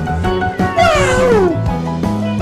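A cat meowing once about a second in: one long call that falls in pitch, over background music.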